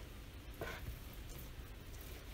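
Faint scraping of a knife blade slicing through raw venison and onto a wooden cutting board.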